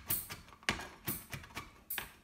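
Knife chopping on a plastic cutting board in a steady rhythm, a strike roughly every half second with lighter knocks between.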